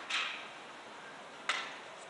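Two sharp clicks about a second and a half apart, each fading quickly, over steady background hiss.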